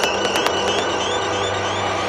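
Psytrance track in a breakdown: the kick drum and hi-hats have dropped out, leaving a dense, hissy synth wash with a few steady held tones.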